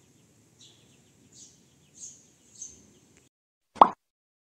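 Faint bird chirps, short and high, a few times about every half second, over quiet room ambience; the ambience cuts out after about three seconds. Near the end comes a single short, loud pop sound effect.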